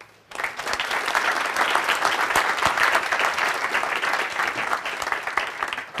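Audience applauding: many hands clapping together at a steady level, starting just after a brief hush.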